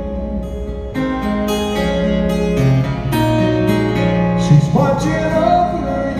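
Amplified steel-string acoustic guitar playing a live instrumental passage, chords strummed and picked one after another from about a second in. A wavering held note comes in near the end.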